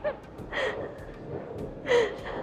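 A person's short breathy non-word vocal sounds, three in all: one at the very start, one about half a second in, and the loudest near the end.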